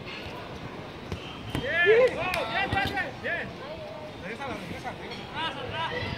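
Players shouting and calling out during a pickup beach soccer game, with the loudest call about two seconds in and more calls near the end, over a steady outdoor background, with a couple of dull thuds among the calls.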